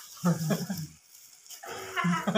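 A person's short wordless vocal sound, heard once and starting again near the end.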